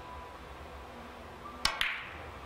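A three-cushion billiards shot: two sharp clicks about a sixth of a second apart, near the end. The cue tip strikes the cue ball, then a second click of ball striking ball.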